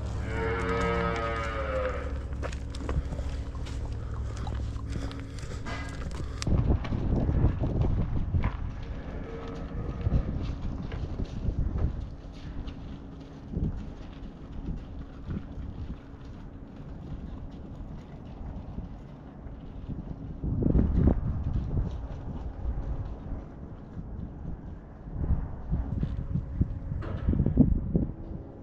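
A Holstein cow mooing once, a call of about two seconds at the start, followed by an uneven low rumble with a few louder stretches.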